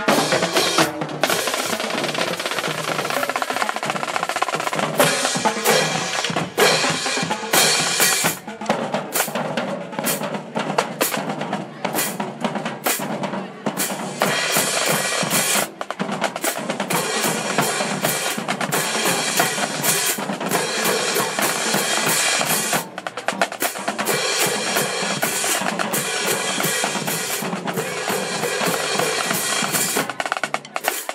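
Marching drumline playing: snare drums, bass drums and hand cymbals in a dense, continuous beat.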